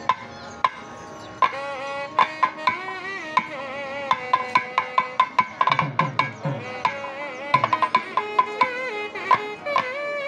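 Traditional Kerala temple percussion: sharp hand-drum strokes with a wavering, gliding pitched melody over them. A couple of lone strokes open it, and the playing turns dense about a second and a half in.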